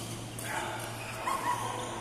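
Sports shoes squeaking on the court floor as badminton players move, with several short high squeaks about a second and a half in. A sharp tap comes about half a second in, over a steady low hum from the hall.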